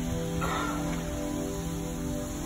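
Calm background music with sustained, held notes. About half a second in, a short harsh call sounds briefly over it.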